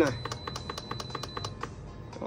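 Induction cooktop heating a pot of boiling water as its power is turned down: rapid irregular clicks with a faint high steady whine that stops about one and a half seconds in.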